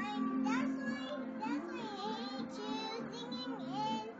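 Music with a child's voice singing, heard through a TV speaker.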